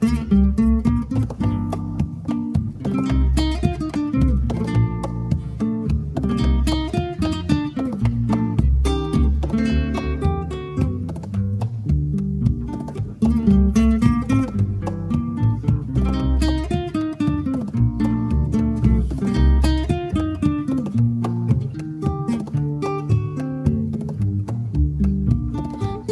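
Instrumental interlude of an Afro-Peruvian song: acoustic guitar picking a steady stream of notes over a low bass part, with no singing.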